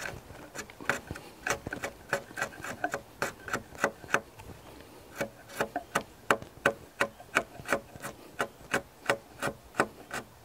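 A slick, a wide long-handled chisel, paring wood from the shoulder of a joist pocket in a log, cleaning it down to the scored line. It goes in quick short strokes, about three a second.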